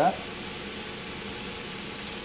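Steady low hiss of chicken and vegetables sizzling in a cast iron wok over medium-high heat, with a faint steady hum underneath.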